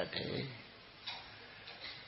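A man's preaching voice trails off at the end of a phrase, then a pause with a few faint clicks.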